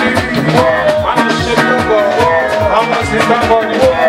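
Live African band music playing loud, with a steady drum beat and a sliding melody line over it.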